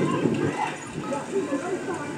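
Several people's voices overlapping, talking and calling out as a background babble.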